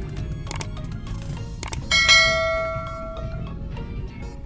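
Subscribe-button sound effect: a few quick clicks, then a bell chime about two seconds in that rings and fades over about a second and a half, over background music.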